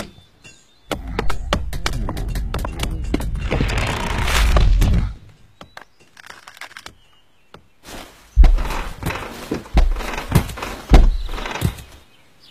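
Stone cracking and crumbling over a low rumble that builds to a loud peak, as a boulder creature heaves itself out of the ground. After a pause come a series of heavy low thuds, like the creature's stony footsteps.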